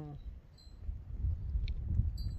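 Wind buffeting the microphone: a gusty low rumble that swells and dips.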